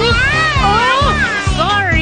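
A cartoon toddler's wavering wail of a cry, one long cry then a shorter one near the end, over the backing music of a children's song.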